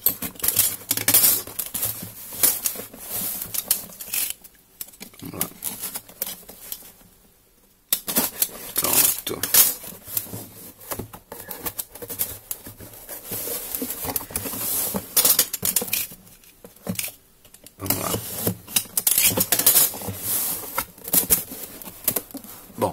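Utility-knife blade slitting packing tape on a cardboard shipping box, with scraping, tapping and rustling of cardboard as the box is turned and its flaps opened. The sharp clicks and scrapes come in spells, with a near-silent pause about seven to eight seconds in.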